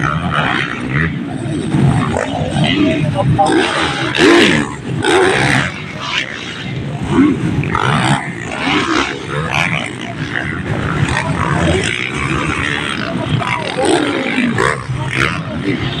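Motocross dirt bike engines revving and rising and falling in pitch as the bikes race over the jumps, with crowd voices chattering close by.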